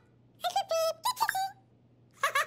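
A cartoon bird character's squeaky, high-pitched gibberish voice: a quick string of chirpy syllables starting about half a second in and lasting about a second.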